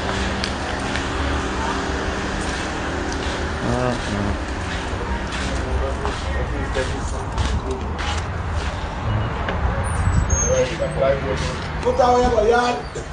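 Muffled, indistinct voices over a steady low rumble, with scattered clicks and rustling from a phone being handled against clothing.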